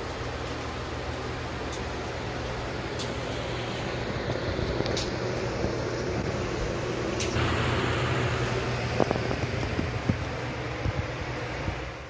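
Steady low hum and hiss of room noise, with a few faint clicks. The hiss grows louder about seven seconds in, and a few light knocks follow near the end.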